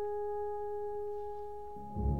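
A French horn holds one long, steady note that slowly fades. Near the end the orchestra comes back in underneath.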